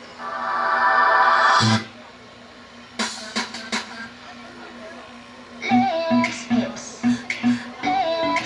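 Dance music from the loudspeakers set up for the routine: a loud swelling intro sound that cuts off sharply about two seconds in, a quieter stretch with a few sharp hits, then the song's steady beat and melody kick in about six seconds in.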